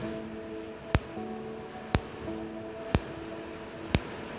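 SuperCam laser pulses striking a target in a lab test, each shot a sharp snap, regularly about once a second. This is the sound the rover's microphone is meant to record to judge a rock's density and porosity.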